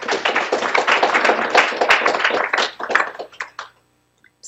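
Audience applauding, a dense patter of many hands clapping that thins out and stops near the end.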